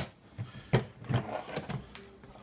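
A string of light knocks and clacks as the hard plastic parts of a portable twin-tub washing machine are handled, the loudest a little under a second in.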